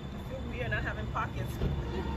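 Low rumble of city street traffic, with a brief indistinct voice about half a second in.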